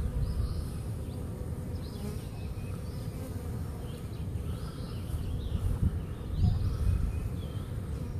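Swarm of honey bees buzzing, a steady dense hum from the thousands of bees clustered together and flying around the cluster.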